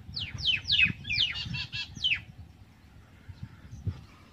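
Bird chirping: a quick run of about eight sharp chirps, each sliding down in pitch, through the first two seconds, then only faint calls. A low rumble runs underneath.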